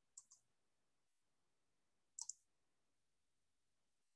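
Near silence with faint clicks: a quick pair at the start and another pair about two seconds in.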